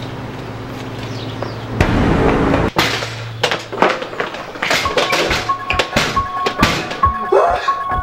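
Steady background hum, then a loud rush and a sharp thunk as a glass school door is pushed open by its push bar. Music then comes in: a quick percussive beat with a repeating high note.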